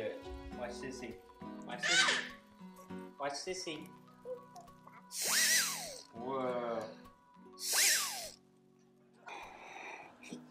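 A child's toy whistle blown in short, squealing toots that rise and fall in pitch, three times, over background music. A child's wavering voice comes between toots, and a breathy blow into a balloon comes near the end.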